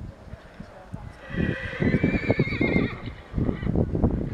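A horse whinnying: one long, wavering call that starts about a second in and lasts about two seconds, over irregular low thumps and rumble.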